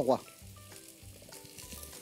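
Golden apple chunks dropped by hand into butter melting in a stainless steel pot, with a soft, steady sizzle.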